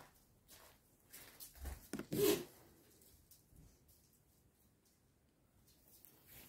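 Fabric rustling close to the microphone, with a few soft scuffs and one louder brief rustle about two seconds in.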